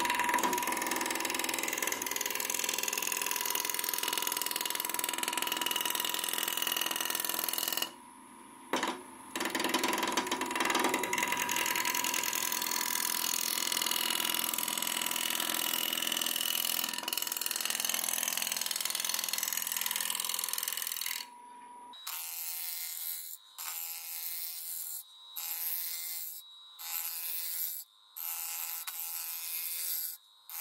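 A wood lathe spins a spindle blank while a hand-held gouge cuts along it, giving a steady hiss of cutting wood over the lathe's hum. The cut stops for a moment about eight seconds in. In the last third the sound thins and breaks off in short, regular gaps as the tool is lifted and set back on the wood.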